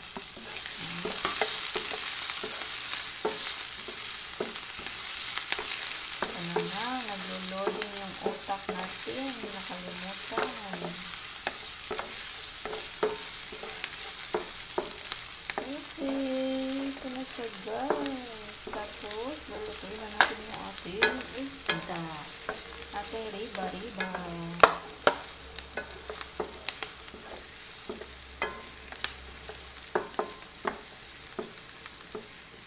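Chopped onion and garlic sizzling in hot oil in a nonstick frying pan, stirred with a wooden spatula. The spatula knocks and scrapes against the pan in sharp clicks, more often in the second half.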